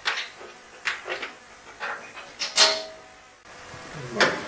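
Handling noise from ignition wires and a rubber spark-plug boot being routed and pushed onto a plug: several short clicks and rubs, the loudest about two and a half seconds in.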